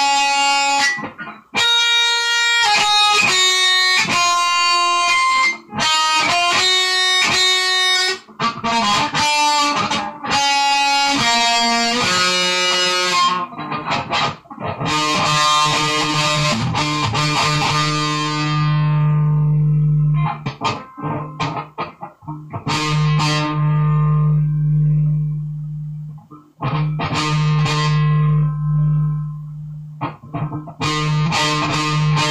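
Guitar played with a distorted tone: chords and single notes, with brief breaks between phrases. Some chords are left to ring out for several seconds, and a low note is held under the chords in the second half.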